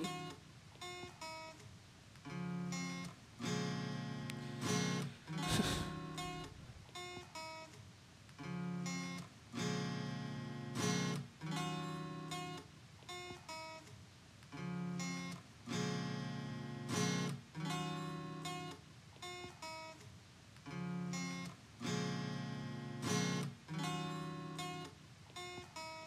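Acoustic guitar music: slow chords struck about once a second, each ringing briefly before the next.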